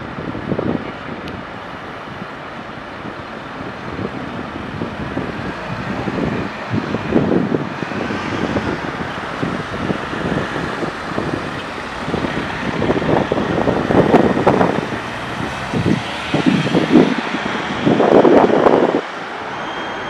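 Outdoor street noise: road traffic passing, with wind buffeting the microphone in irregular gusts that grow louder in the second half.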